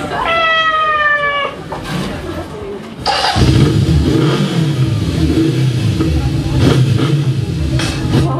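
Club sound system playing loud: a long, drawn-out, slightly falling call, then a deep, bass-heavy sound kicks in about three seconds in and carries on steadily.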